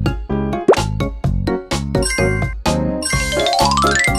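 Upbeat children's cartoon music with a steady, bouncy beat. A short rising sound effect comes about a second in, and near the end a fast rising run of chiming notes sounds as the car changes colour.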